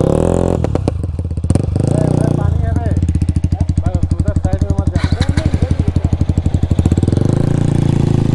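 Motorcycle engines idling, with a steady rapid low pulse from the nearest bike.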